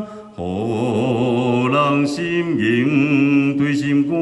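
A man singing a slow Taiwanese Hokkien song solo into a microphone, with long held notes and a wavering vibrato; a brief breath break comes just after the start, then the singing carries on.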